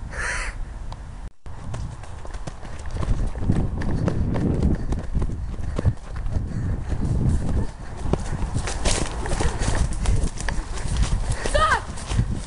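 Running footsteps on woodland ground, with heavy rumble from a handheld camera being carried at a run. A short voice-like cry comes near the end.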